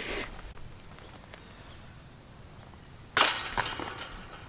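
A disc striking the chains of a DISCatcher disc golf basket about three seconds in: a sudden loud metallic rattle with a high ringing that fades away.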